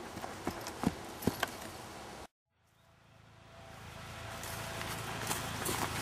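A few footsteps thudding on grassy ground as someone runs. Just over two seconds in, the sound cuts off dead at an edit. About a second later, outdoor background noise with a steady low hum fades back in and slowly grows louder.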